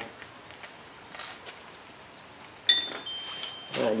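After a quiet stretch, a single metallic clink of a steel hand tool against metal about two-thirds of the way in, ringing briefly at a high pitch.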